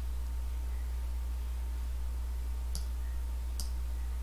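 Two computer mouse clicks a little under a second apart, about three-quarters of the way through, as the simulation's fade setting is raised. A steady low hum runs underneath.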